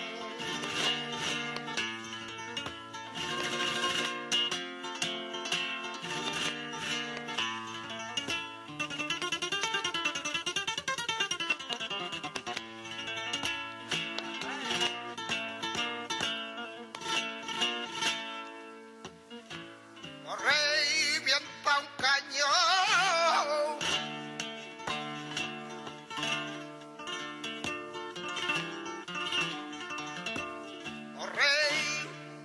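Flamenco guitar playing in the bulerías por soleá compás, with runs of fast notes in the middle. A male flamenco singer comes in about twenty seconds in for a few seconds of wavering, melismatic cante before the guitar carries on alone.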